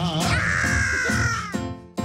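A long, high, raspy yell that slides down in pitch and fades out, over the band's music.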